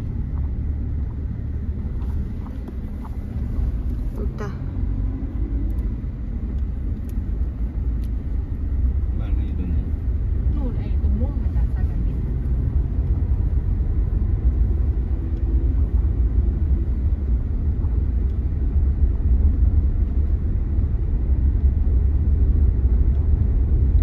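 Steady low rumble of a car driving, heard from inside the cabin: engine and road noise, growing a little louder in the second half.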